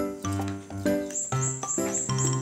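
Background music: an upbeat tune of short, evenly paced notes, with a run of repeated high bell-like notes in the second half.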